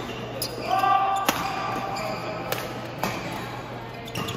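Badminton rally in a large indoor hall: the sharp clicks of rackets striking a shuttlecock, four hits at uneven intervals. A short pitched call or shoe squeak comes about a second in.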